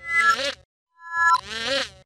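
Intro logo jingle audio distorted by video-editing effects into a wavering, warbling pitched sound. It comes in two bursts with about half a second of silence between them, and each burst opens with short steady beeps.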